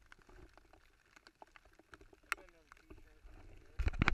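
Handling noise on a close-mounted camera in a small boat: faint scattered clicks and rustles, then loud bumps near the end as the camera is jostled.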